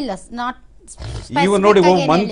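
Speech only: one voice breaks off, and after a short pause another voice starts talking loudly in a raised, forceful tone.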